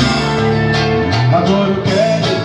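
Live band playing: electric and acoustic guitars, bass and drum kit, with steady drum strikes under held notes.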